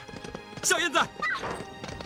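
Horse hoofbeats, with a loud, wavering high cry about half a second in that lasts under a second, over steady background music.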